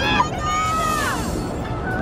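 A raised voice with a long held note that falls away about a second in, over a steady background noise.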